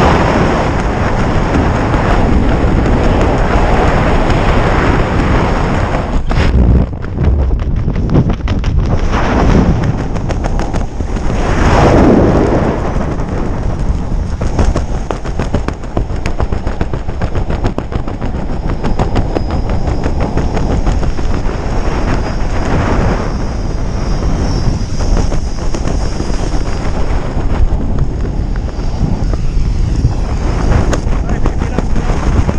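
Loud wind buffeting the camera's microphone during a tandem parachute descent under an open canopy: a constant rushing roar full of crackling pops, surging unevenly.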